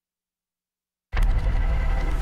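Dead silence for about a second, then a TV news segment's opening sting cuts in abruptly: a deep rumble with a rushing hiss above it.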